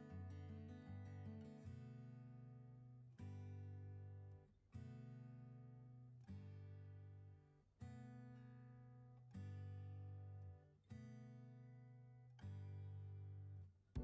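Quiet background music on acoustic guitar: a short run of picked notes, then a chord struck about every second and a half, each left ringing and fading.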